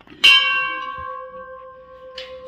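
Hanging brass temple bell rung once by hand: one strike about a quarter second in, then a long ring of several steady tones that slowly fades.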